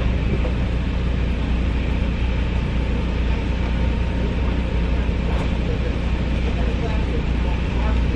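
A car idling, heard from inside the cabin: a steady low rumble with an even hiss over it.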